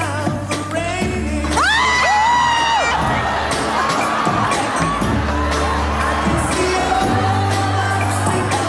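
A man singing over a backing track with a steady bass, his voice sliding up into long held high notes, while the audience cheers.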